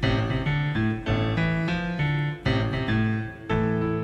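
Piano music: chords struck in a steady rhythm, a new chord about every half second, with a brief lull about three and a half seconds in.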